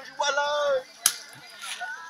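A single sharp crack of a machete striking sugarcane about a second in, after a brief shouted voice.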